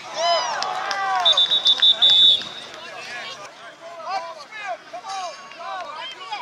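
A referee's pea whistle blown once in a trilling blast of about a second, starting about a second in, blowing the play dead. Children's and spectators' voices shout around it.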